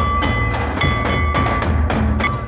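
Folk drumming: a large rope-laced kettle drum (tamak') and double-headed stick-beaten drums played in a steady, driving rhythm, with a deep ringing boom under the strokes. A high held tone sounds over the drums, breaking off twice.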